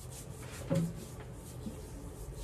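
A hand rubbing a thick body butter up and down a bare arm, a faint skin-on-skin swishing in repeated strokes. A short voice sound comes less than a second in.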